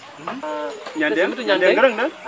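A man speaking in an outdoor interview, in bursts that rise and fall in pitch.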